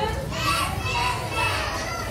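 Young children's high-pitched voices chattering and calling out together, with adult voices mixed in.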